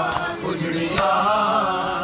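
Men's voices chanting a noha, a mourning lament. Two sharp slaps cut through the chant about a second apart, typical of hands striking bare chests in matam.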